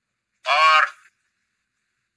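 A brief vocal sound, a single syllable or hum lasting about half a second, with a wavering pitch.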